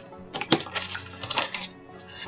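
Pages being turned in a ring-binder journal: paper rustling with a run of sharp clicks as the sheets move over the metal rings, the loudest click about half a second in.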